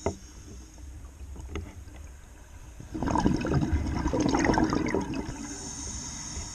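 Scuba diver's exhaled air bubbling out of a regulator and rushing past the underwater camera for about two seconds, starting about halfway in, after a single click at the start.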